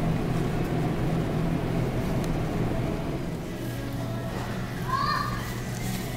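Supermarket ambience: a steady low electrical hum with faint background music, and a brief distant voice about five seconds in.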